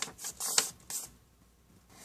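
A strip of white paper rustling as it is handled after folding, a few short crisp rustles in the first second or so.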